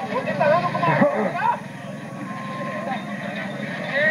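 A man's voice calling out loudly for about the first second and a half, then a quieter steady background of crowd noise.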